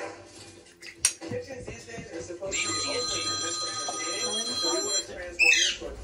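Television speech in the background, with a sharp click about a second in, then a steady high electronic-sounding tone lasting about two and a half seconds. Near the end comes a short, loud call that falls in pitch.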